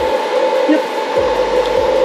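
Power inverter's cooling fan running steadily with a whir and a steady hum, switched on to keep the inverter cool under the heavy load of a drip coffee maker.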